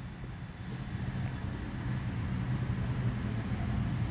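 Marker pen writing on a whiteboard, faint scratchy strokes over a steady low hum.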